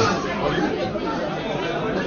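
Many diners talking at once in a crowded restaurant dining room, their overlapping conversations blending into a steady babble.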